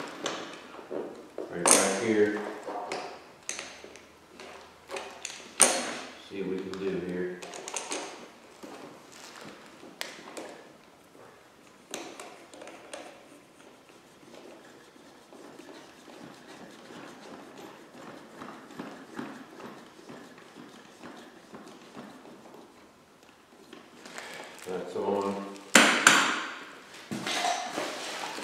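Scattered clicks, taps and knocks of plastic and metal parts being handled while the high-pressure hose is fitted to an electric pressure washer, with a quieter stretch of handling rustle in the middle and a few muttered words.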